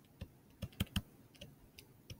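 Stylus tips tapping and clicking on a tablet screen while handwriting a word: about six short, irregular clicks.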